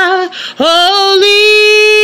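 A woman singing unaccompanied, holding long notes with vibrato. A phrase ends just after the start, and a new note scoops up about half a second in and is held through the rest.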